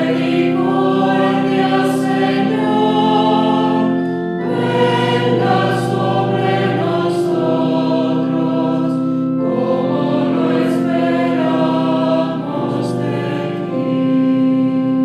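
Sacred choral music: a choir singing slow, held chords that move to a new chord every few seconds.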